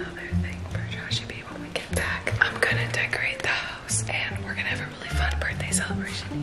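A woman whispering to the camera over background music with a bass line.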